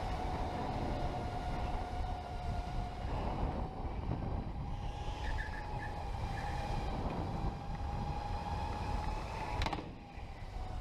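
Electric go-kart's motor whining at speed in a steady tone that rises and dips slightly, over a low rumble. A single sharp knock comes near the end.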